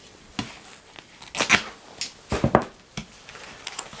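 Hands pressing gaffer tape onto plastic Venetian-blind slats and handling the taped strip: a string of short, sharp taps and crackles, about half a dozen, with quiet rustling between them.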